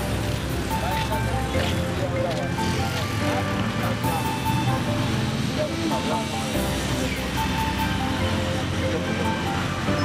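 Background music with a voice in it, laid over street traffic.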